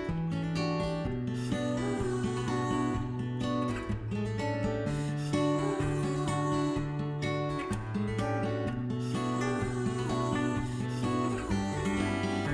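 Background music led by strummed acoustic guitar, with a bass line that steps to a new note every second or so.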